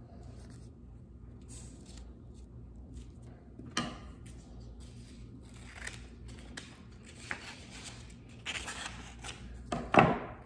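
Scissors snipping black construction paper into strips, with paper rustling and a few sharp clicks, the loudest just before the end.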